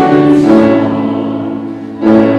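Choir and congregation singing a hymn with instrumental accompaniment; a chord at the end of a line is held and fades away over the second half.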